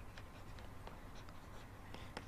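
Faint, short scratches of a pen writing words by hand, over a low steady hum.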